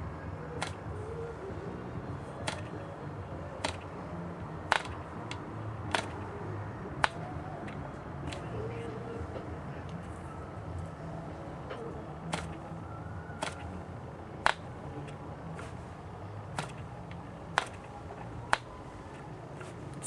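Sharp single snaps, roughly one a second with some longer gaps, from a hand flicking the propeller of a small Cox two-stroke glow-plug model engine that does not catch and run. A faint steady low hum sits underneath.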